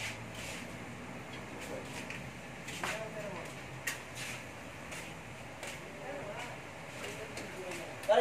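Faint background talk and room noise, with a few sharp clicks, the loudest about four seconds in.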